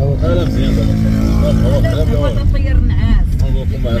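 Steady low rumble of a car on the move, heard from inside the cabin, with a voice over it.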